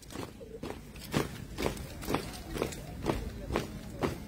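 A squad marching in step in tall leather boots: footfalls landing together in a steady rhythm of about two a second.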